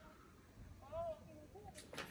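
Quiet background with a brief, faint high-pitched voice about a second in, rising and falling once, and a shorter fainter sound just after.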